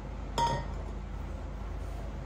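A single short clink with a brief ringing tone about half a second in, over a steady low electrical hum.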